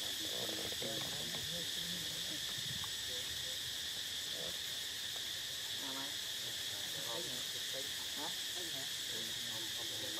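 Steady, shrill chorus of forest insects, one continuous high drone with no pauses.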